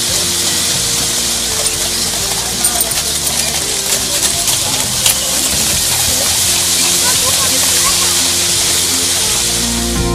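Large fountain's tall jet spraying water that falls into its basin, a steady, loud hiss of splashing water.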